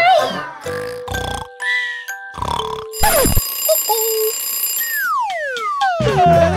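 Children's-video soundtrack of music and cartoon-style sound effects: short held beeps in the first half, a sharp downward swoop about three seconds in, and several falling whistles near the end.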